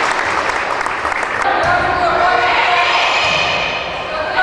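Gymnasium crowd noise during a volleyball rally: sharp smacks of the ball being hit in the first second and a half, then several voices shouting and cheering together.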